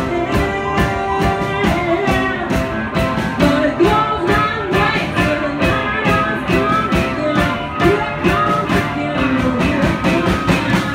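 Live indie rock band playing: electric guitar and a drum kit keeping a steady beat, with vocals over them.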